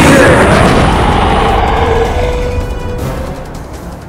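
Explosion sound effect: a loud boom at the start that slowly dies away over about three seconds, under background music.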